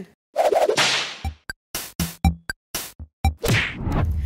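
Edited transition sound effects: a whoosh, then a run of sharp electronic percussion hits about four a second with a few low thuds, and a second whoosh near the end.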